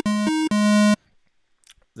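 Propellerhead Reason's Subtractor software synthesizer sounding a buzzy square-wave tone, broken into a few short segments as it is switched between a square wave made by phase offset modulation and a plain square-wave oscillator; the two sound pretty damn close. The tone stops about a second in.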